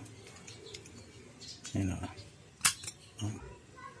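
Faint handling of a scooter's centrifugal clutch shoe assembly, with a sharp metallic click about two and a half seconds in as the clutch spring is worked onto its post with a screwdriver.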